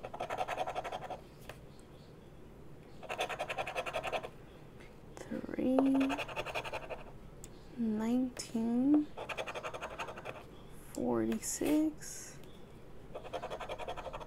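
Edge of a fidget spinner scraping the coating off a scratch-off lottery ticket in five bursts of rapid strokes, each about a second long. Between the bursts a person's voice makes several short hums that rise and fall, louder than the scraping.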